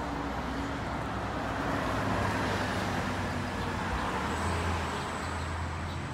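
Road traffic passing close by: a vehicle's noise swells over a few seconds and eases off again, with a low engine hum.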